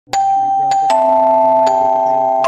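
Background music: a melody of struck, ringing, chime-like notes over a soft sustained accompaniment, four notes in the first two seconds.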